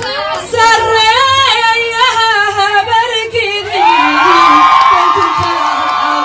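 A woman singing live into a microphone, in short wavering phrases, then from about four seconds in holding one long high note.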